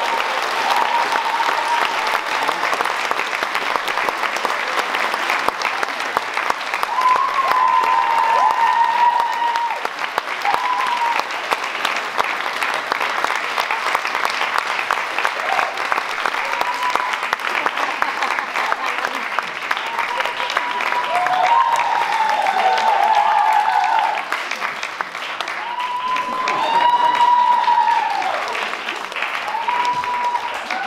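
Sustained clapping by many hands, with voices calling out over it several times.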